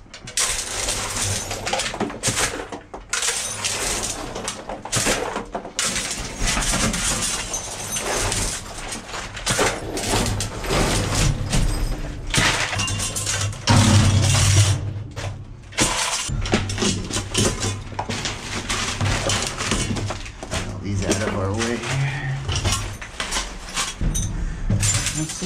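Handheld magnetic sweeper pushed and dragged over cardboard strewn with loose steel screws: a dense, steady clatter of screws clicking against each other and snapping onto the magnet, with scraping over the cardboard.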